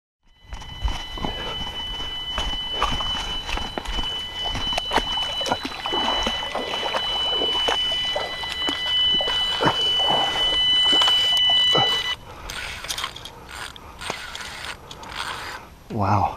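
A carp bite alarm sounding one continuous high electronic tone, the signal of a fish taking line, which cuts off about twelve seconds in. Knocks and clicks of rod and tackle handling run through it and carry on after it stops.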